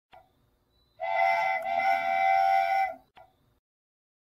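Cartoon steam-train whistle sound effect: a chord-like whistle sounding two toots, a short one then a longer one of about a second and a half, with a faint click shortly before and after.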